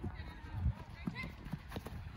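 Youth soccer match on artificial turf: distant shouts from players and sideline, with a few short knocks of the ball being kicked and players running.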